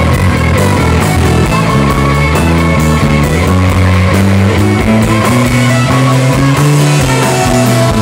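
Live rock band playing an instrumental passage, electric guitars over bass, drums and keyboards, with no singing.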